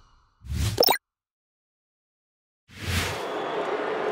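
A short sound-effect stinger for an animated club logo: a low hit with a quick upward sweep, cut off sharply. Then silence for over a second and a half, before stadium crowd noise comes in near the end.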